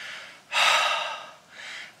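A man's single heavy breath, starting about half a second in and fading out within a second, drawn in a pause of his talk while he is still winded from a steep, hot walk.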